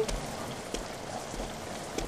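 Steady rain falling, an even hiss with no break.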